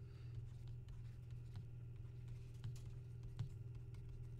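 Stylus writing on a tablet screen: a few light taps and faint scratches as words are handwritten, over a steady low electrical hum.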